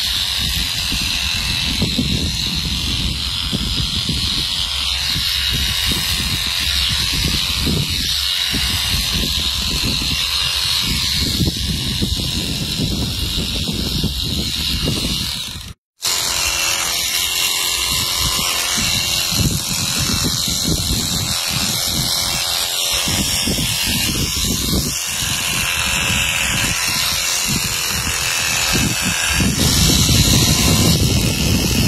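Oster electric sheep shears running steadily with a high whine as they clip through a sheep's fleece. The sound cuts out for a moment about halfway through.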